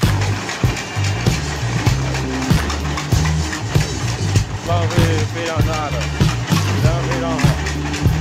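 Noisy running of a bamboo-cutting machine as bamboo is fed into it, mixed under background music with a repeating bass line.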